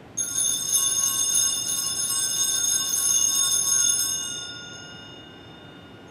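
Altar bells shaken at the elevation of the host during the consecration. A bright jingling ring starts just after the beginning, runs for about four seconds, then dies away.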